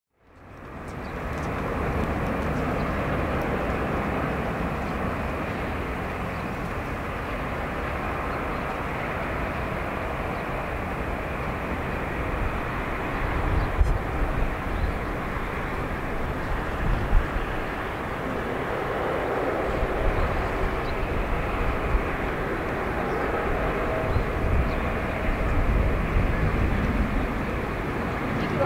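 Four Pratt & Whitney PW4056 turbofans of a Boeing 747-400 on final approach to land: steady jet engine noise that fades in over the first two seconds and grows slowly louder as the aircraft nears, with a few low rumbling swells.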